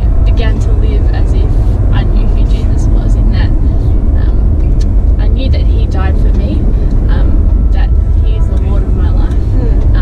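Steady low rumble of road and engine noise inside a moving car's cabin, with a woman's voice over it.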